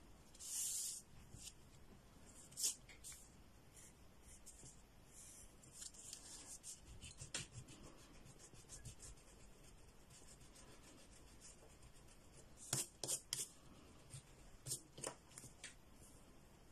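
Faint pencil strokes on paper: short, scratchy strokes in irregular clusters, with three quick strokes in a row about three-quarters of the way through.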